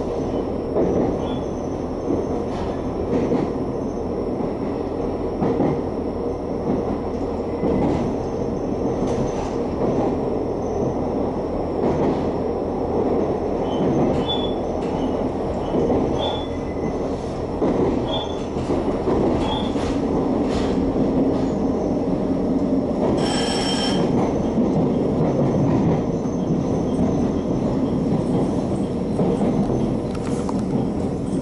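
JR Hokkaido H100 electric-diesel railcar running, heard inside the cabin over the powered bogie: a steady drone from the diesel engine and traction motors, with the rumble of wheels on rail. A few short high squeals come in the middle, the sharpest a little after two-thirds of the way through.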